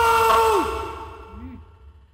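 An animated character's man's voice holding a long, strained yell of grief that breaks off about half a second in, with the level then dropping away. A brief faint sound follows about a second and a half in.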